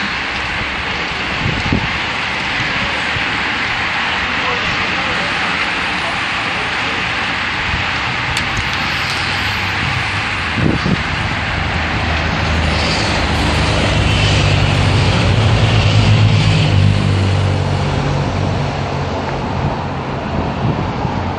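Race cyclists passing on an open road, with a steady hiss of outdoor noise. About twelve seconds in, a motor vehicle's engine rumble swells as it passes and fades near the end.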